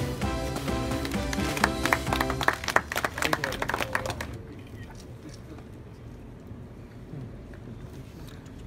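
Music playing over a crowd in a cinema hall, with a flurry of sharp claps about two seconds in. The music and clapping stop about four seconds in, leaving a low crowd murmur.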